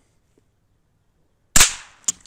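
A single shot from a suppressed Chiappa Little Badger .22 rimfire rifle: one sharp crack about a second and a half in, with a short ringing tail, after silence.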